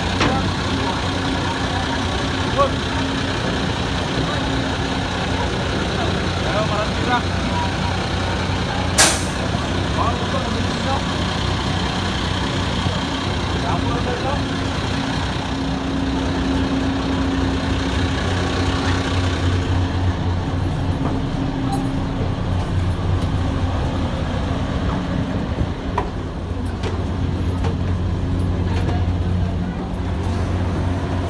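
Heavy engines idling aboard a roll-on/roll-off ferry: a steady low drone that grows stronger in the second half, with people talking and one short sharp hiss about nine seconds in.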